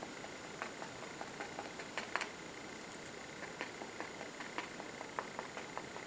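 Faint, irregular soft ticks of a paintbrush dabbing gouache onto sketchbook paper, a few taps a second, one a little louder about two seconds in.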